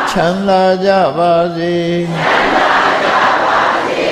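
A Buddhist monk chants a line of Pali verse on one nearly steady pitch. From about two seconds in, a congregation answers in unison, a blurred mass of voices, in call-and-response recitation.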